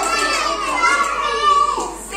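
Young children's voices calling out over one another, several high-pitched voices at once.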